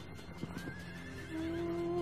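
A horse whinnies faintly in one wavering call of about a second, with a few soft hoof clops. A held chord of background music comes in about halfway through.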